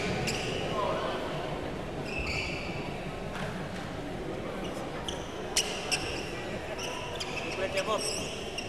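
Brief sneaker squeaks on an indoor badminton court floor, with a few sharp taps a little past halfway and again near the end, over talk in the hall.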